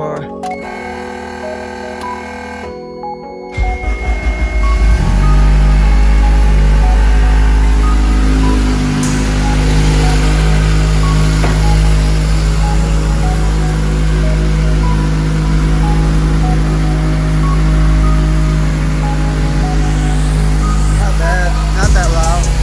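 Honda K20 inline-four engine starting about three and a half seconds in, then idling steadily with a deep, loud rumble. Background music plays throughout.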